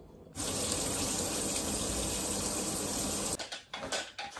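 Water running steadily from a tap, starting and cutting off abruptly about three seconds apart, followed by a few light clicks and knocks.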